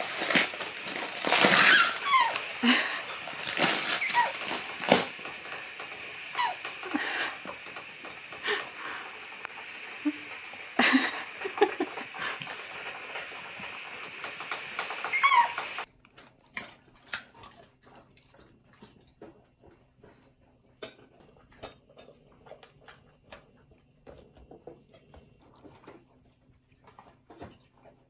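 A husky tearing and crinkling gift wrapping paper with its nose and paws, with high squeaks over the rustling. About two-thirds of the way through the sound cuts off abruptly to near quiet, leaving only scattered faint clicks.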